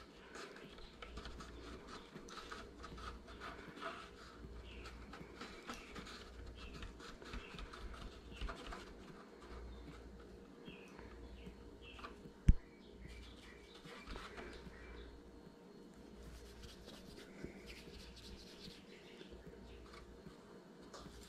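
Faint rubbing and small squeaks of fingers pressing and smoothing soft air-dry modeling clay onto a foam deer form, with one sharp thump about twelve seconds in.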